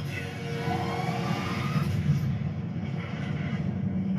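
Film trailer soundtrack: music over a heavy low rumble, with a tone rising between about half a second and two seconds in.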